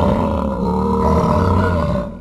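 A long, deep roar used as a sound effect, held steady for about two seconds and fading out at the end.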